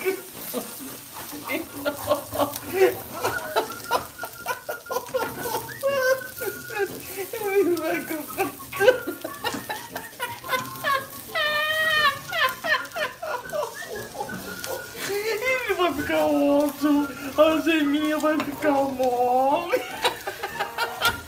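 A man's drawn-out, playful vocal exclamations and hums with no clear words, wavering up and down in pitch, the longest and fullest near the end. Beneath them come light clicks and scrapes of a plastic spatula in a frying pan.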